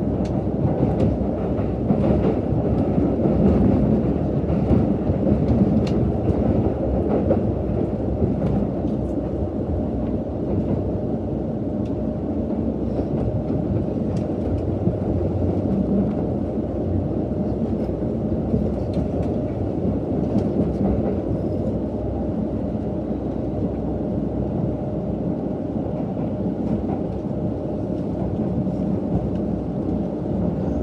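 Cabin noise of a KiHa 183 series diesel express train running: a steady low rumble with scattered wheel clicks over the rails, a little louder in the first few seconds.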